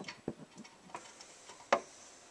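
A few sharp, irregularly spaced light clicks, the loudest one about three-quarters of the way through.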